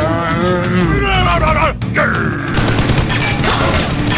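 A drawn-out groaning voice whose pitch wavers and then falls away, followed about two and a half seconds in by a dense burst of rapid gunfire sounds, the kind of shooting effect laid over staged Nerf-blaster fights.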